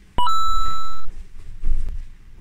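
An electronic beep about a fifth of a second in: a brief lower note that jumps at once to a higher one, held for nearly a second and then cut off. Soft low thumps follow near the end.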